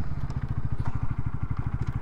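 Bajaj Pulsar NS200's single-cylinder engine idling with an even, rapid beat while the bike is braked to a near stop.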